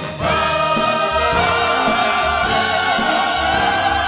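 Broadway ensemble chorus singing with a pit orchestra. A full chord comes in just after a brief break, and the voices hold long notes with vibrato that step up in pitch about a second and a half in.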